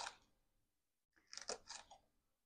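Faint knife cuts through a small sweet pepper onto a cutting board: a tap right at the start, then a few soft clicks about a second and a half in, with near silence between.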